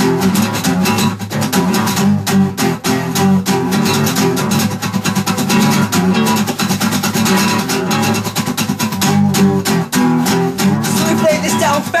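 Acoustic guitar strummed in a steady, fast rhythm, chords played over and over as an accompaniment between rap verses.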